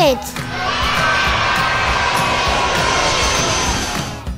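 Steady rushing noise of a seaplane's engines heard from inside the cabin during takeoff. It rises about half a second in and holds steady, with music underneath.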